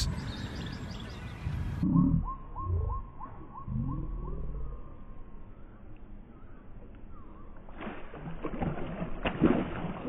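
A hooked fish splashing and thrashing at the surface close to the bank, with a sharp splash about nine seconds in. Earlier there are low rumbles around two and three seconds in, which are the loudest part, and a faint run of short, evenly spaced chirps.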